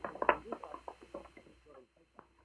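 Indistinct low voices mixed with short sharp taps, dying away to near silence near the end.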